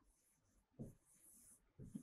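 Faint scratching of a pen writing on a whiteboard, otherwise near silence.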